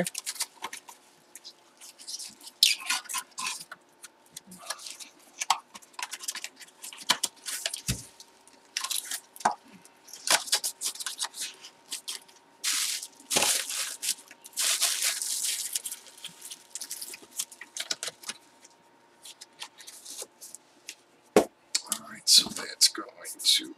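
Paper and plastic packaging handled and unwrapped by hand: irregular rustling, crinkling and tearing with scattered small taps, in a longer run of crinkling about two-thirds of the way in. A faint steady hum lies underneath.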